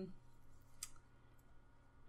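Near silence with a low room hum, broken by one faint, sharp click a little under a second in.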